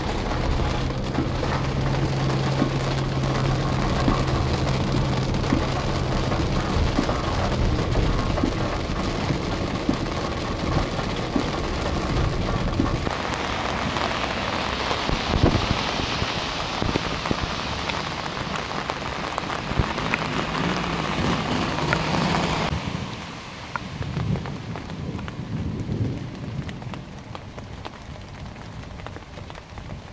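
Steady hiss of water, heavy as rain, with a low rumble underneath. The sound changes abruptly about 13 and 23 seconds in and is quieter in the last few seconds.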